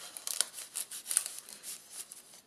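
Paper pages and tags of a handmade junk journal rustling as they are handled and turned: a quick series of short, crisp rustles.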